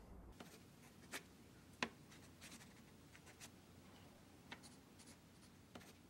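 Near silence: faint room tone with a few faint, brief clicks scattered through it.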